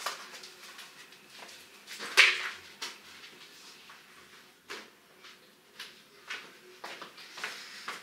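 A few short knocks and rustles from household items being handled and set down, the loudest about two seconds in, with smaller ones in the second half.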